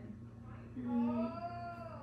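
A woman's drawn-out, whimpering moan that rises and then falls in pitch, lasting about a second and a half, a sound of pain and distress late in pregnancy. A steady low hum runs underneath.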